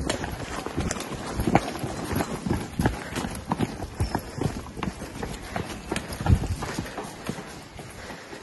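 Several people running on wet pavement: quick, uneven footfalls slapping the ground, a few per second.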